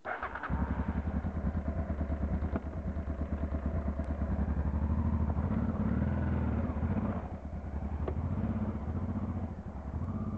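Motorcycle engine starting at the very beginning, then running with a steady pulsing beat. It is revved up, louder around the middle, while the rear tyre spins on packed snow, then eases briefly and picks up again.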